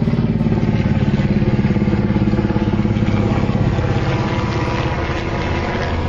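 Large helicopter flying low overhead, its main rotor beating in a fast, steady pulse over the engine's drone; the sound eases slightly about four seconds in as it moves off.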